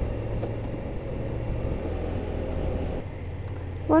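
BMW GS parallel-twin motorcycle engine running at a steady cruise, heard with wind noise through a bike-mounted camera's microphone; the engine note drops about three seconds in.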